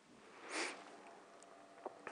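A man's short sniff through the nose, close to the microphone, followed by a small click near the end.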